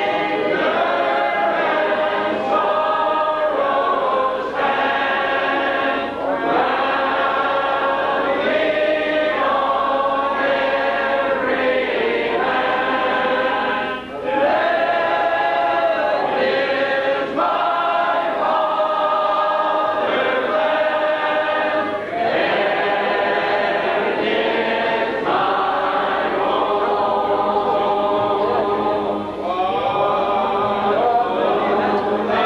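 A congregation singing a hymn together in unaccompanied, a cappella style. Long, held notes come in phrases, with brief breaths between phrases about every eight seconds.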